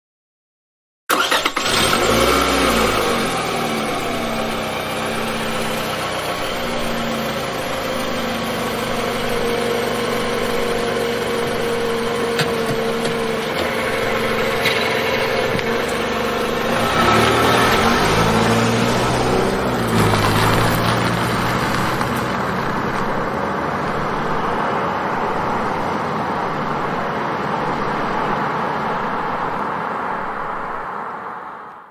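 Car engine sound effect: an engine starts suddenly about a second in and keeps running, its pitch rising and falling as it revs, with a second surge of revving a little past halfway, fading away right at the end.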